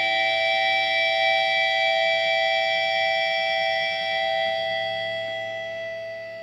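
Sustained electric guitar feedback closing a metalcore song: several steady held tones ringing on without drums, fading out near the end.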